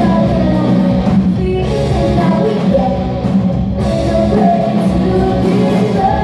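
Live rock band playing: electric guitars, bass guitar and drum kit, with a woman singing over them.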